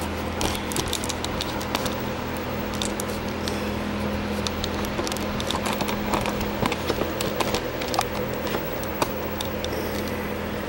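A steady machine hum, with scattered small clicks and rubbing from the camera being handled against bare skin.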